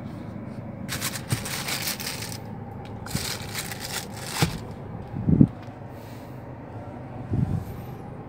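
Handling noise from a hand-held phone: fingers rub and scrape over it in two stretches of rustling, then come two dull thumps, over a steady low hum of the car cabin.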